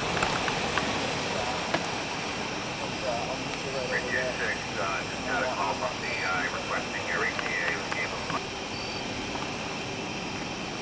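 Steady outdoor background rumble and hiss, with faint, indistinct voices talking from about four to eight seconds in.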